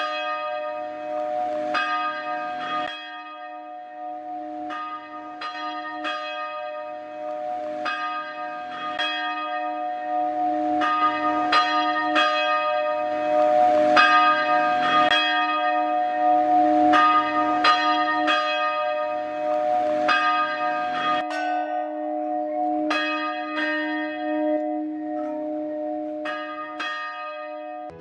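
Church bell rung by hand with a pull rope, its clapper striking over and over, a little more than once a second, each stroke ringing on into the next so a steady hum carries through.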